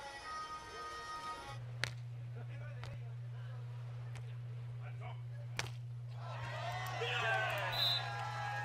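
Volleyball being struck by hand in a beach volleyball rally: a few sharp hits about a second apart, then players' shouts and crowd cheering as the point ends, over a steady low hum.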